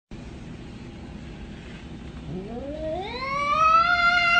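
A cat's single long meow that starts low about two seconds in, rises steadily in pitch, and is held on a high note near the end.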